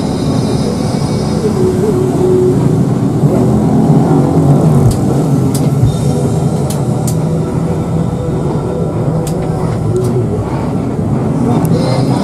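Cabin noise inside a Hino RK8 coach under way at low speed: the diesel engine runs steadily under a road rumble, with a few sharp ticks in the middle.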